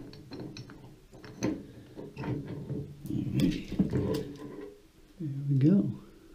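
An old brass shower valve stem being turned out of its threaded fitting in the wall by hand and pulled free, with small metallic clicks and scrapes. A man makes a brief vocal sound near the end.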